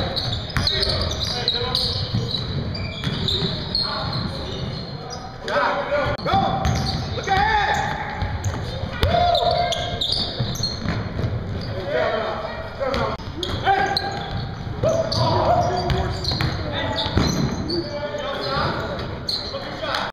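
Basketball bouncing on a hardwood gym floor with sharp knocks of dribbles and footfalls during a full-court game, under players' voices and shouts in a large hall.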